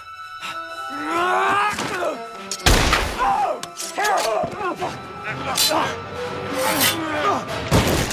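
Two men struggling, grunting and shouting, with a loud bang about three seconds in and a shotgun blast just before the end.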